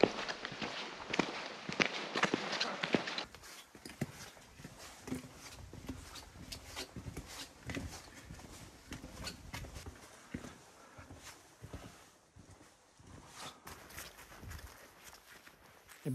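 Footsteps of a person walking, a run of irregular short steps, louder for the first three seconds and then fainter.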